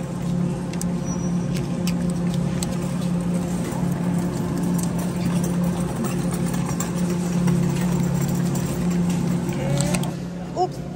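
Steady low hum of a supermarket refrigerated display case, with faint clicks and crinkles of plastic-wrapped tofu packages being handled.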